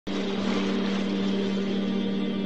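Ambient intro music: a steady low drone with overtones under a breathy, windy wash, starting abruptly at the opening.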